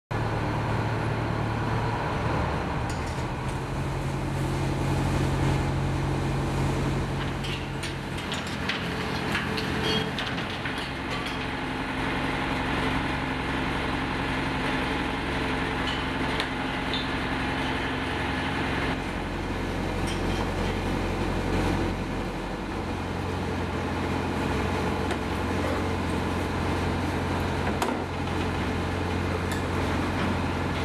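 A gillnet fishing boat's engine running with a steady low hum that shifts in pitch a few times, with scattered knocks and clatter from the net handling on deck.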